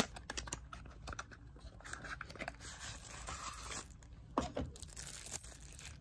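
A white cardboard box being slid open by hand: a sharp tap at the very start, small clicks, then the paperboard scraping and rustling. Near the end comes the rustle of the white wrapping around the endomotor handpiece as it is lifted out.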